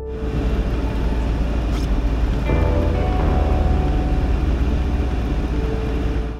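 Moving 1994 GMC Suburban heard from inside the cab: a loud, steady rush of driving noise over a deep low rumble, with background music underneath.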